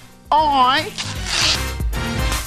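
A voice gives a short wavering cry lasting about half a second. Then music starts about a second in, with a steady low bass under it.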